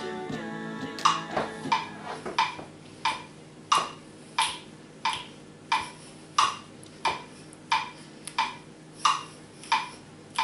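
Metronome clicking steadily, about one and a half clicks a second, counting time in the gap before the a cappella track begins; a held musical tone fades out in the first second or so.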